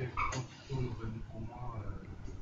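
Faint, indistinct voice speaking away from the microphone, low and muffled.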